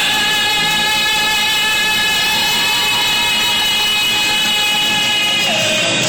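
A male singer holding one long, steady note over backing music, with the pitch stepping down near the end.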